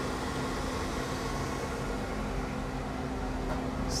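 Steady background noise of a running boiler, a constant hum with one unchanging low tone under an even hiss.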